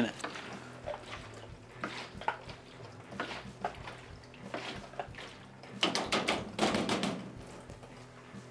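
Light plastic clicks and knocks as a red cap is pressed onto a plastic film developing tank and the tank is handled on a stainless steel sink, with a busier stretch of handling about six to seven seconds in.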